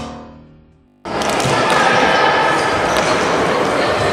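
A music chord fading out, then from about a second in the loud, echoing din of an indoor hockey hall: many children's voices at once, with a few sharp knocks.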